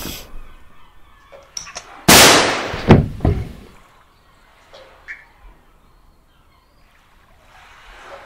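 A sudden loud bang about two seconds in, dying away over a second or so, with two further knocks close after it, then only faint scattered clicks.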